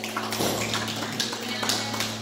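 Steady electric-guitar amplifier hum left ringing after the song, under scattered sharp taps and indistinct voices.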